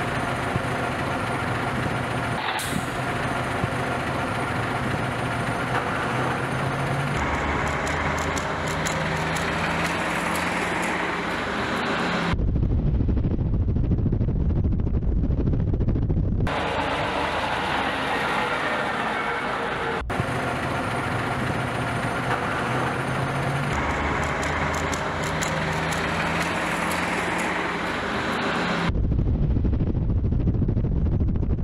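Truck engine idling steadily, with voices in the background. Twice, about twelve seconds in and again near the end, this gives way to a louder, deeper rumble of a vehicle on the move.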